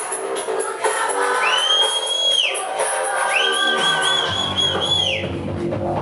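Electronic dance music playing loud over a club sound system from a DJ's decks. A high, held tone sounds twice over the track, the second time longer and wavering, and a deep bass line comes in about four seconds in.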